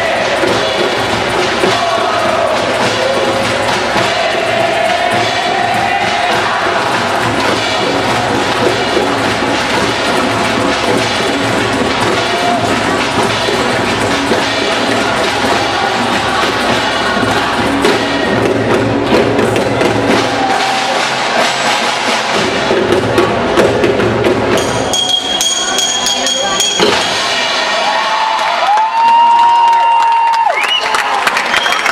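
Live percussion ensemble playing drums and hand percussion together in a dense, loud rhythm. About 25 seconds in the playing thins out, and a few held high tones sound near the end.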